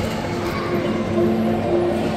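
Chalet-style cuckoo clock sounding short notes at two pitches, one higher and one lower, repeating over the hubbub of a crowded mall.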